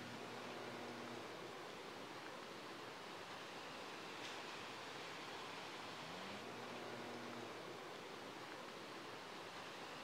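Steady outdoor hiss of storm-weather ambience, fairly quiet, with a faint low hum that drops out after the first second and comes back, gliding up in pitch, a little after six seconds.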